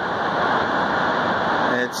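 Steady, even rush of water from Shoshone Falls, a wide waterfall, heard from an overlook. A voice starts right at the end.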